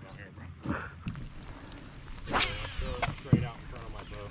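Geese honking in a few harsh calls, the loudest a little after two seconds in. A sharp knock comes just after three seconds in.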